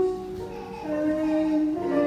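Male voices singing a slow song through microphones, with held notes that step up and down, over light instrumental accompaniment.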